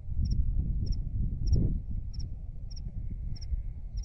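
A cricket chirping at dusk: a short, high double chirp repeated evenly about every half second, over a low rumble on the microphone.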